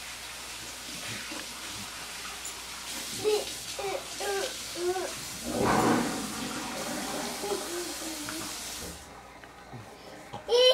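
Water running in the house, a steady hiss that shuts off abruptly about nine seconds in. A toddler makes short babbling sounds in the middle, and there is a louder noisy burst around six seconds.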